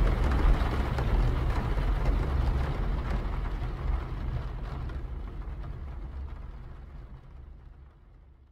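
Car interior driving sound effect: a steady low engine and road rumble with a hiss over it, fading out gradually to silence near the end.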